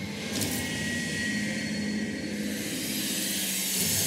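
Cinematic logo sound effect: a sustained rumbling whoosh with a high hissing shimmer, jet-like, with a brief swoosh about half a second in.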